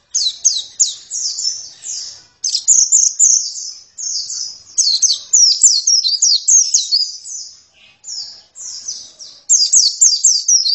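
White-eye singing a fast, high warbling song of quick down-slurred notes, in rapid phrases broken by short pauses.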